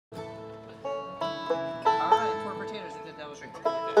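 Banjo picking a few separate, ringing notes to lead in a bluegrass tune, with the band joining in for fuller, louder playing just before the end.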